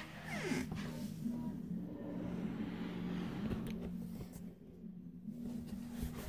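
A steady low hum with faint ticks and rustles of handling.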